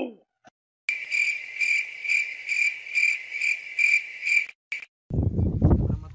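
Cricket chirping sound effect: a steady high trill pulsing about twice a second, starting and stopping abruptly out of silence. Near the end it gives way to a low rumble of wind on the microphone.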